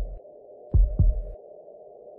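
Heartbeat-like low double thumps in an instrumental film score: the tail of one lub-dub pair at the start and a full pair about a second in, over a steady low drone.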